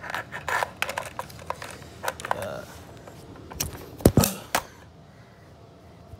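Steel AK-pattern magazine being worked in the magazine well of a Zastava M92 PAP: a quick run of small metallic clicks, then a few heavier knocks about four seconds in.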